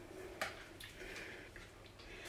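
Faint handling of a wired computer mouse's coiled cable as fingers work it loose from its tie. There is one sharp click about half a second in, then a few lighter ticks.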